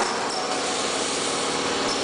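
Automated rotary foil cutting and separation machine running: a steady mechanical noise with no pauses.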